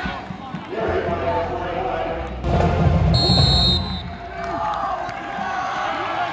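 Football crowd in the stands: spectators shouting and cheering over music and nearby talk. It swells into a louder burst from about two and a half to four seconds in.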